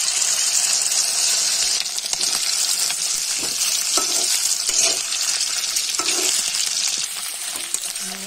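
Cornflour-marinated chicken pieces sizzling in hot oil in a wok, a steady hiss, while a metal spatula stirs them. The spatula gives occasional short scrapes and knocks against the pan.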